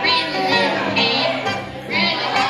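Live country-folk band: acoustic guitar and a metal-bodied guitar playing, with a woman's high voice singing over them.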